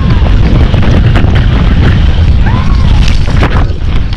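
Loud, constant low rumble of wind buffeting the microphone of a camera carried on a galloping horse, with irregular thuds of the hooves and jolts of the ride.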